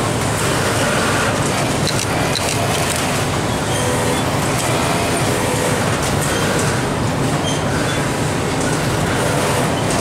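Steady din of a garment factory floor: many industrial sewing machines running at once, with scattered clicks.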